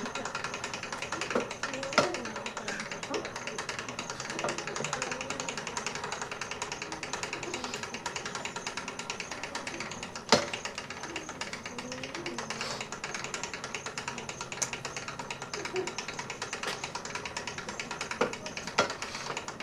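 A fast, even ticking runs throughout, with faint low voices beneath it and two sharp knocks, one about two seconds in and a louder one about ten seconds in.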